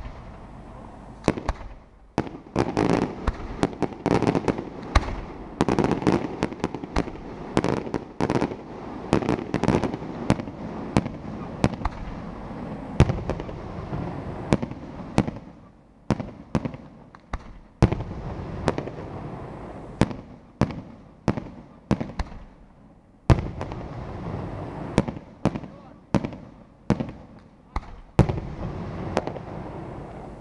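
Daytime aerial fireworks: a rapid, irregular run of sharp bangs from bursting shells, with crackling between them, easing off in two brief lulls in the second half.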